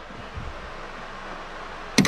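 Hands working a MIG welder's wire-feed drive roll assembly: a soft low thud about a third of a second in, then one sharp metal click near the end, over a steady background hiss.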